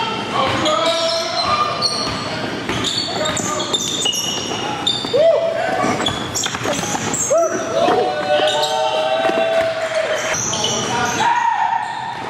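Live basketball game sound in a gym: the ball dribbling on the hardwood floor, short sneaker squeaks and players calling out to each other, all echoing in the hall.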